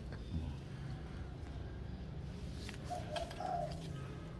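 A bird calling faintly in the background, a few short low notes a little after three seconds in, over a steady low hum.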